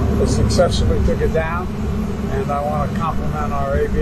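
A man speaking outdoors, his voice over a steady low rumble.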